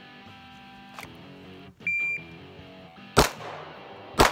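A shot timer's start beep sounds once, about two seconds in, and a single pistol shot follows about a second later as the timed five-shot string begins. Guitar background music plays under both.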